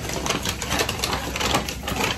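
A brown paper bag crinkling and rustling in quick, irregular crackles as it is handled and opened.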